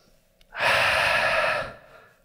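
One deep, audible breath taken by a man close on a headset microphone, starting about half a second in and lasting just over a second.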